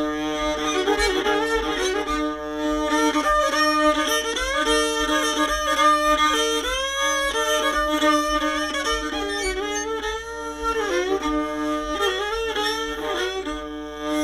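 Old-time string band instrumental break between verses: a fiddle plays the tune with a drone string ringing steadily beneath it, and banjo accompaniment is picked underneath.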